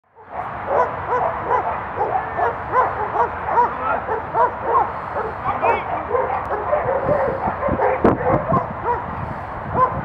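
Dutch Shepherd police dog barking rapidly and without a break, about three to four barks a second. A few sharp knocks come about eight seconds in.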